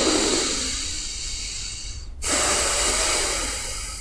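A man taking two long, deep breaths close to the microphone, each about two seconds, the second following straight after the first.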